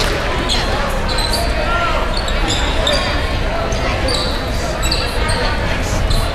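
Basketball shoes squeaking in many short chirps on a hardwood gym floor as players run, with a ball bouncing and a crowd chattering throughout.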